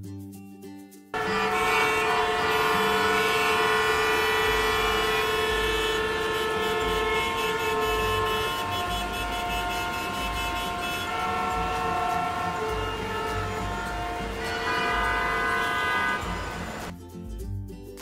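Traffic-jam sound effect: many car horns honking at once over the rumble of traffic. It comes in suddenly about a second in and fades near the end.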